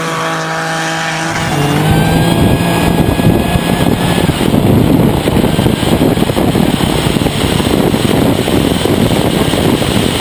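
A drag-race car's engine held at steady revs. About two seconds in it gives way to loud, dense full-throttle engine noise with wind rush, heard from on board as the car accelerates down the strip.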